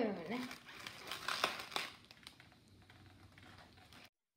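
Latex modelling balloons being handled: a twisted balloon sculpture giving off a few short rubbing clicks and crinkles in the first two seconds, then near quiet.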